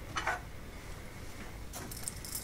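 Two faint, light clicks of a metal spoon against a glass mixing bowl, one about a quarter second in and one near the end, over quiet room tone.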